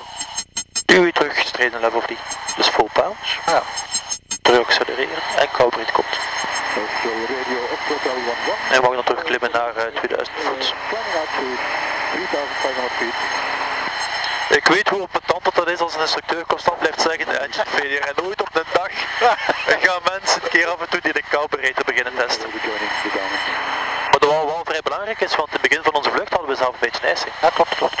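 Voices talking over the headset intercom of a light aircraft in flight, with steady engine and cabin noise running underneath.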